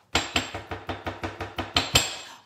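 Rapid, evenly spaced clicking, about seven clicks a second, with a faint hum under it: a stuttering livestream audio glitch.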